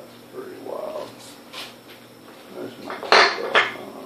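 A dog whining: a short whimper that rises and falls in pitch, then two loud, short noisy sounds about three seconds in.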